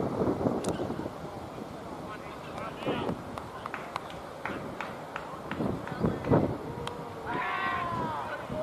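Distant shouted calls from cricketers across an open field, loudest near the end, over outdoor background noise, with a few faint sharp clicks scattered through.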